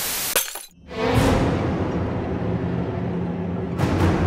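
Television static hiss that cuts off about half a second in. After a short silence there is a crash that rings away, and music with low held notes comes in.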